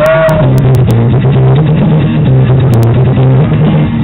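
Electric bass and amplified acoustic guitar playing a rock song through small portable amplifiers, with a strong, steady bass line moving from note to note.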